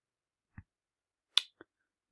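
A faint low tap, then two short sharp clicks about a quarter of a second apart, the first much louder.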